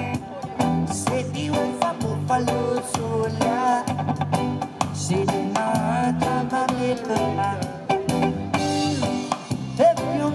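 Live reggae music: a man singing over guitar with a steady beat.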